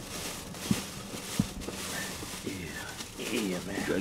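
Paper fast-food bag rustling and crinkling as food is unpacked, with two light knocks in the first half. A man's voice starts low near the end.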